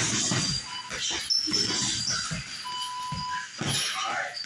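Boxing-gym workout: a run of short, breathy huffs and grunts of exertion mixed with thuds on heavy punching bags. A brief squeak-like tone comes about three seconds in.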